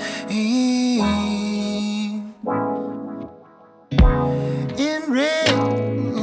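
Electric guitar played live through effects: a long echoing chord rings and fades, a short chord follows, then after a brief near-pause a louder passage starts about four seconds in with deep low hits.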